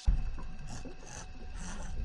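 Cartoon sound effect: a deep rumble with a grating rasp over it. It starts suddenly, as the vampire's insides churn, and breaks off abruptly.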